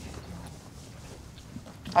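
A quiet pause in a live stage performance: low room tone with a few faint small noises, and a voice starting right at the end.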